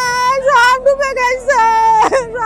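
A woman wailing in grief: a high, drawn-out crying voice held on one pitch, with a sob-like break about halfway through and a second long cry that sags near the end.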